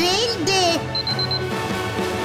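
A quick run of about four high, even electronic beeps about a second in, a cartoon display sound as location markers pop up on map screens, over steady background music.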